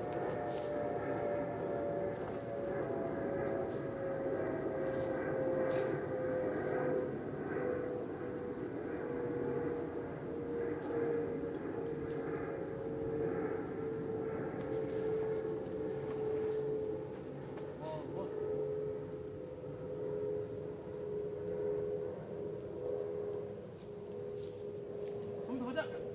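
A steady machine-like hum that slowly sinks in pitch, with faint scattered clicks and taps.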